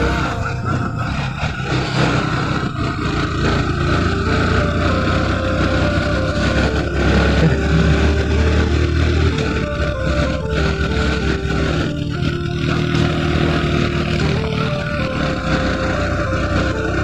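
Motorcycle running along at a steady pace, its engine and road noise heard from the rider's seat, with background music laid over it: a melody stepping up and down between notes.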